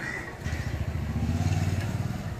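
A motor vehicle's engine passing close by. It comes in about half a second in, grows louder, and eases off near the end.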